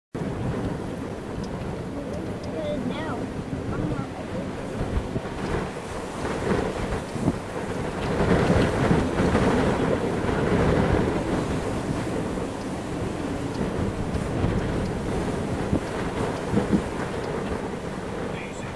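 Strong, gusty inflow wind of a supercell buffeting the microphone; the uploader guesses it at 50 to 60 mph. The gusts are loudest about eight to eleven seconds in.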